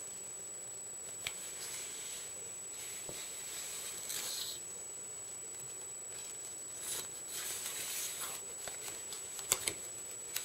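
Handling noise from a duct-taped cardboard sheath: rustling and scraping of tape and cardboard as a wooden-handled knife is worked into its front pocket, with a sharp click about a second in and a few more sharp clicks near the end.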